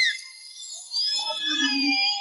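Eerie horror-film score: a held tone breaks off at the start, and after a short lull a new cluster of sustained, slightly wavering tones comes in about a second in.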